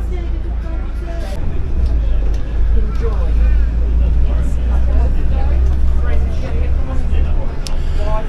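Deep engine and drivetrain rumble inside a city bus, growing louder about a second and a half in as the bus gets moving, with passengers talking over it.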